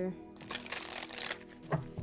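Tarot cards being shuffled in the hands: a rustling riffle lasting about a second, followed by two light taps of the cards near the end.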